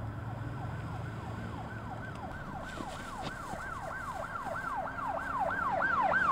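Police car siren in a fast yelp. Each cycle falls in pitch, about three cycles a second, and it grows louder toward the end.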